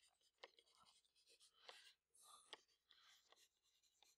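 Faint taps and scratches of a stylus writing on a tablet, a few light ticks with soft short strokes between them, in near silence.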